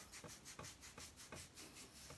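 Faint, quick rhythmic rubbing of fingertips massaging an oil into the scalp and hair, about six or seven strokes a second.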